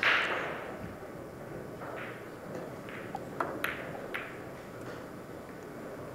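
Billiard balls struck on a pool table: a sharp hit at the start as the shot is played, a short spread of rolling sound, then a handful of separate crisp clicks of balls kissing one another between two and four seconds in.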